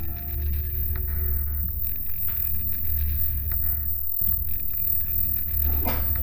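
A loud, steady low rumble that breaks off briefly about four seconds in, with faint scraping clicks over it.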